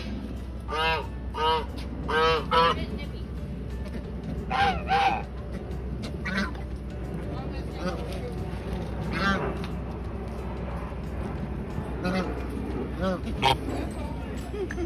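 A domestic goose honking, about ten nasal calls in runs of two or three with gaps between them.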